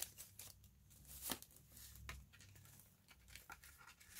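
Faint rustling and light clicks of a laminated paper card being handled and slid into a notebook's front pocket.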